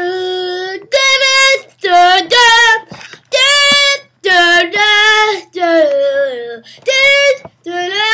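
A child singing an outro jingle unaccompanied: a string of about eight loud, held notes, each under a second long, with short breaks between them.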